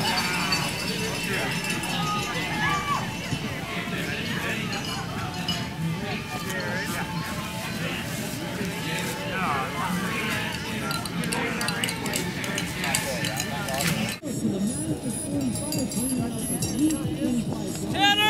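Crowd of race spectators shouting and cheering over one another, with cowbells clinking. The sound cuts off suddenly about fourteen seconds in, and a few voices carry on more quietly.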